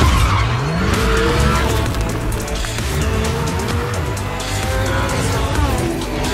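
Maserati MC20's twin-turbo V6 revving up and down repeatedly, with tyre squeal as the car slides, mixed with background music.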